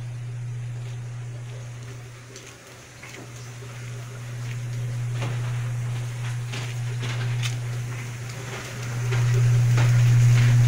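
Washing machine motor running with a steady low hum that grows much louder near the end, with scattered light knocks over it.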